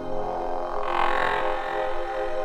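Progressive house track intro: sustained synthesizer tones with a low droning layer, and a filtered band of sound that swells and fades about a second in.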